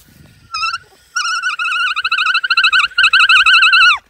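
An alpaca's high, warbling call: a short call about half a second in, then one long wavering call that falls away at the very end.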